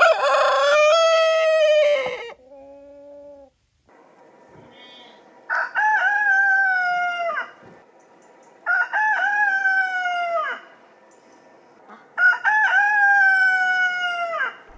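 Roosters crowing four times, each crow about two seconds long and falling off at the end, with a fainter short call after the first. The first crow is a German Langshan rooster; the later ones are German Salmon (Deutsches Lachshuhn) roosters.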